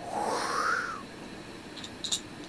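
A short breathy whoosh from a person's mouth, about a second long, rising and then falling in pitch, made as a magic gesture over the dice case.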